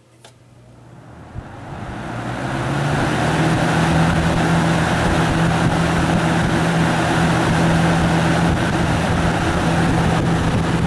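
Galaxy box fan, made by Lasko, switched on at high speed with a click, spinning up over about three seconds to a steady rush of air with a low, even motor hum.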